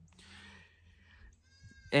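A goat bleating faintly: one quavering call that starts about a second and a half in and carries on as speech resumes.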